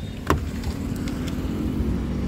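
A sharp click as the Hyundai Verna's door lock actuator releases on the handle's request sensor, then a steady low mechanical hum over street-traffic rumble.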